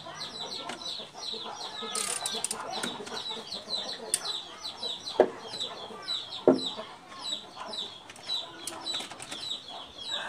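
Birds chirping: a steady run of short, high, falling notes repeated several times a second. Two sharp knocks come about five and six and a half seconds in.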